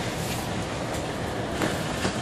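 Steady running noise of a bus in motion, its engine and tyres on the road, heard from inside the cabin, with a brief knock about one and a half seconds in.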